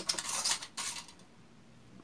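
Clear plastic cup clattering and rustling as it is picked up and handled on a tabletop, a cluster of light knocks over about the first second.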